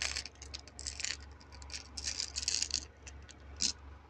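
Small plastic beads clicking and rattling against each other and a plastic compartment box in irregular bursts, loose beads spilled from a box opened upside down.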